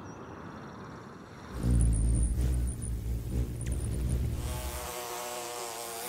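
A quiet haze gives way, about a second and a half in, to a loud low rumble lasting some three seconds, and near the end to the wavering buzz of a bumblebee in flight.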